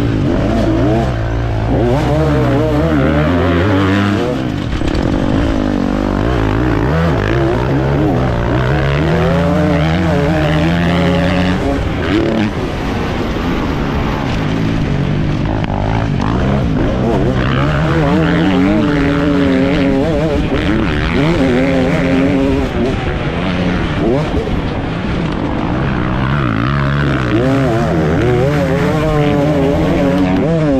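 KTM SX 250 two-stroke motocross engine ridden hard, its revs climbing and dropping back over and over as the throttle is opened and shut around the track.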